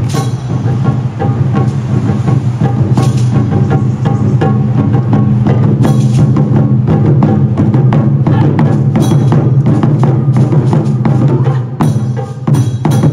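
Taiko drum ensemble playing: a dense, fast stream of drum strokes struck with wooden sticks, with sharp accented hits about every three seconds.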